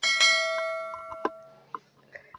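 A bell-like chime struck once, ringing with several tones and fading away over about a second and a half, with a few soft clicks: the notification-bell ding of a subscribe-button overlay animation.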